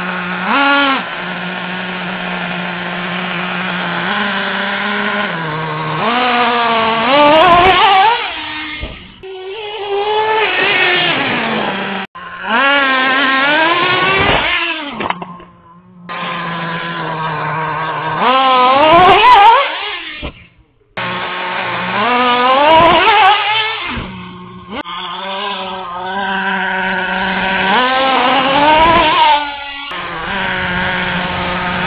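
Traxxas T-Maxx's small nitro engine idling with a steady hum, then revving hard about six times, its pitch climbing steeply and falling back with each run as the truck is driven.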